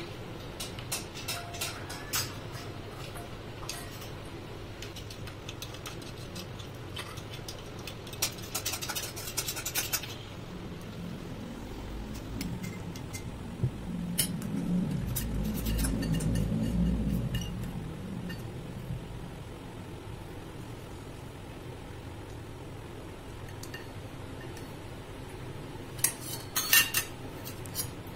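A small spoon clinking and scraping against stainless steel bowls as chopped vegetables are spooned into a mixing bowl, with a cluster of clinks in the first ten seconds and again near the end, and a stretch of low rumbling in the middle.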